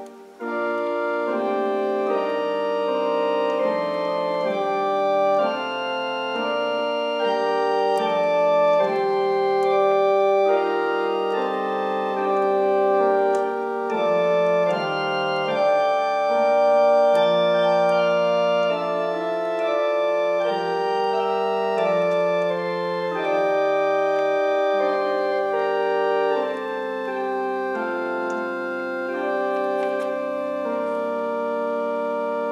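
Church organ playing a slow piece of sustained, held chords that shift from one to the next every second or so, after a brief break right at the start.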